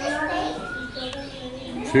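Children's voices talking, with no other distinct sound.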